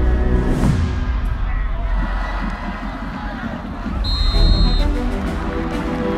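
Background music, with a falling whoosh near the start and a short, steady high-pitched tone about four seconds in.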